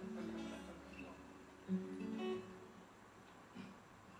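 Acoustic guitar strummed twice, about a second and a half apart, each chord ringing out and fading.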